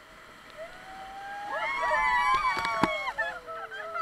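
Several rafters whooping and yelling together as the raft runs a whitewater rapid. Their voices build to a peak about two seconds in, then one long call falls away, and a sharp knock or splash comes near three seconds in.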